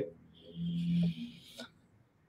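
A person's short hummed 'mm', held at one steady pitch for about half a second, followed by a small click.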